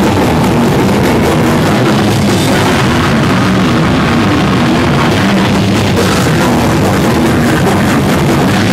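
Heavy metal band playing live, loud and dense: drum kit and guitars in one unbroken wall of sound.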